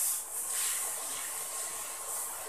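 Potato halwa mixture sizzling in a frying pan as it is stirred with a wooden spatula: a steady, quiet hiss.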